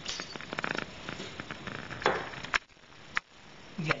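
Handling noises from thin sheet metal and copper parts being moved about: a quick rattle of small clicks in the first second, then two sharp knocks about two seconds in.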